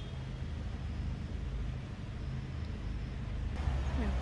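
Steady low rumble of distant road traffic, with no sharp events.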